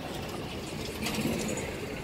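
Key working in a metal bar lock clamped through a golf cart's steering wheel, with small metallic clicks and rattles as the lock is opened.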